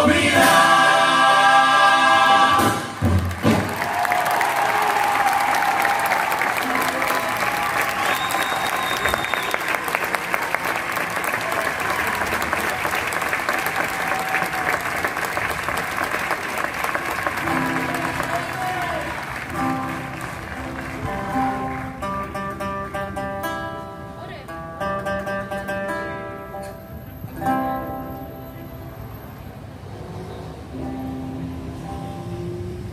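A murga chorus of young voices holds a final sung chord, cut off about three seconds in, followed by audience applause and cheering for about fifteen seconds. The chorus then starts singing again, more quietly, in sustained chords.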